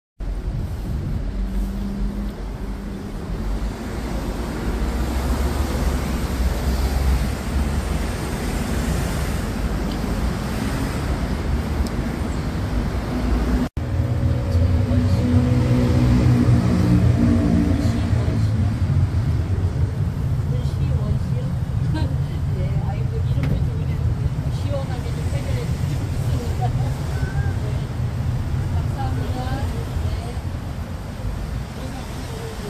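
Outdoor city street noise: a steady low rumble of road traffic with faint, indistinct voices. The sound breaks off abruptly about halfway through, then the rumble continues with scattered distant talk.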